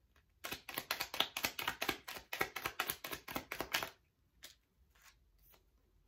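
Deck of tarot cards being shuffled by hand: a fast run of card flicks, several a second, for about three and a half seconds. A few single card clicks follow near the end.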